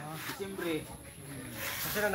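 Faint conversational voices, with a brief high hiss near the end over a steady low hum.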